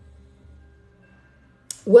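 Mostly quiet room tone with a faint low hum; a short click near the end, then a woman starts speaking.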